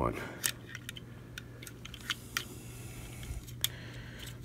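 Light, irregular clicks and taps of hard plastic as the Mastermind Creations R-11 Seraphicus action figure's katana swords are worked into the slots on its backpack, over a faint steady low hum.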